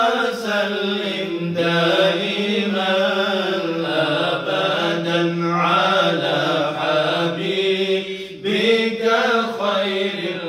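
Men's voices chanting Islamic dhikr in a drawn-out melodic recitation, with a brief break about eight seconds in.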